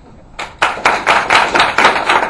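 Small audience applauding, starting about half a second in; the clapping is loud and close.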